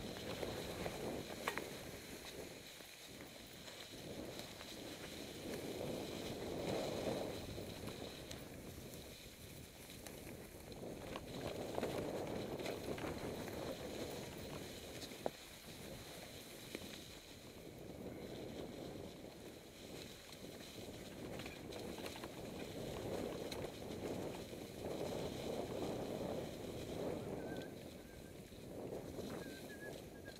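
Mountain bike rolling down a forest trail deep in dry leaves: tyres rustling and crunching through the leaf litter, with wind noise on the ride-mounted camera, swelling and fading every few seconds, and a few sharp knocks from bumps in the trail.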